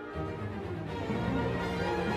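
Orchestral music playing, growing louder and fuller in the low register about a second in.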